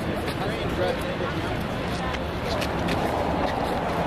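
Indistinct voices of people talking in the background over a steady low rumble, with a few faint clicks.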